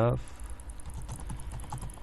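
Typing on a computer keyboard: a run of key clicks.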